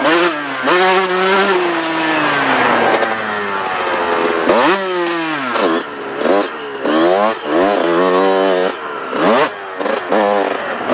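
Dirt bike engine under way. It holds a steady, slowly falling note for the first few seconds, then revs up sharply about halfway through. After that it rises and drops in quick bursts, about every half second, as the throttle is worked and gears change.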